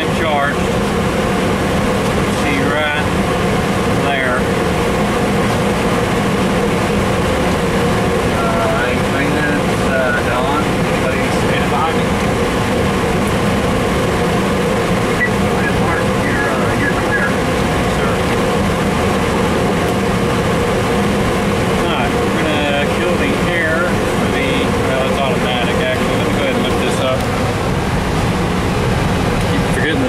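Steady cockpit hum of an Airbus A300-600 running on its APU, with air-conditioning airflow, before either engine is started. Faint voices come and go over the hum.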